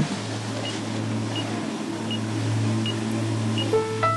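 A low sustained drone of soft underscore music. Over it, a faint short high beep repeats about every three-quarters of a second, the steady pulse of a hospital patient monitor.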